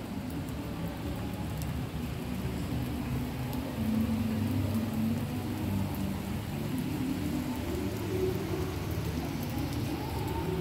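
Outdoor ambience recorded on a smartphone's built-in microphone: a steady low rumble with a faint hum that wavers in pitch, a little louder from about four seconds in.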